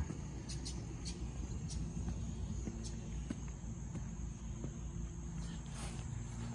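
Outdoor ambience: a steady low rumble with a faint, steady high-pitched insect drone, and a few soft clicks scattered through it.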